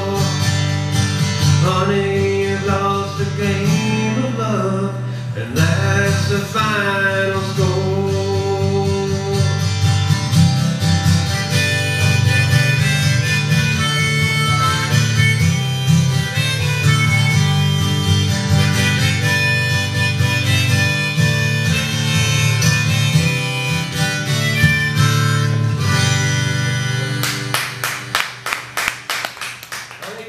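Acoustic guitar strummed through the instrumental ending of a live country-folk song, with a wavering melody line over it in the first several seconds. Near the end comes a run of sharp strums, and the last chord dies away.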